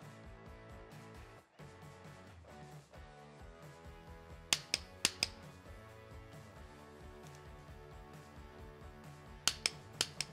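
Sharp metallic clicks of a click-type torque wrench breaking over at its 100 inch-pound setting on the cam plate bolts, a quick cluster of about four clicks halfway in and another few near the end, over background music.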